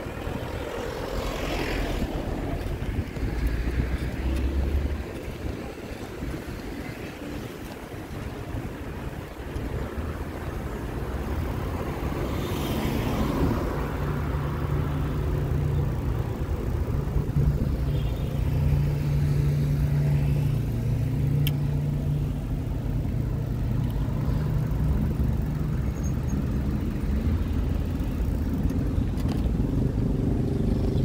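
Road vehicle noise while riding along a city avenue: a steady low engine hum that shifts in pitch, with road and wind rush and a vehicle passing about twelve seconds in.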